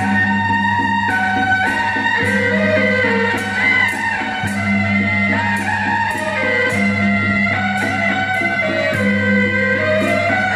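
Beiguan processional music: a suona (Chinese double-reed shawm) plays a loud held melody over cymbal strokes about twice a second.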